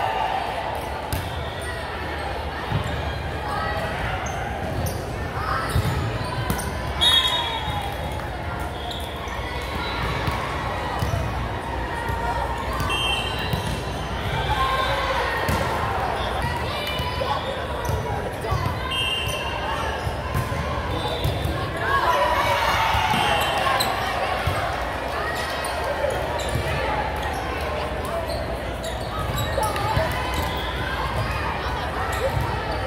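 Volleyball rally in a large echoing gym: the ball being struck with sharp smacks, sneakers squeaking briefly on the hardwood floor, and players calling out over background chatter.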